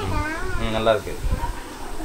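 A teacher's voice speaking during the first second, then a short pause, over a low steady hum.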